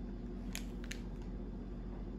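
Plastic bread bag crinkling twice as a loaf is handled and turned over, over a steady low hum.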